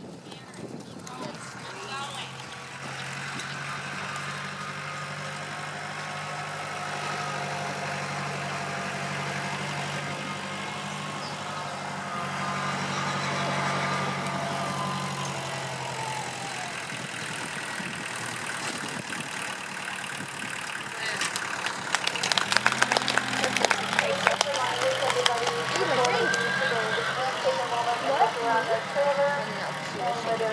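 A vehicle engine idling with a steady low hum, under faint distant voices. About two-thirds of the way through comes a run of sharp knocks and clatter, and the voices grow louder near the end.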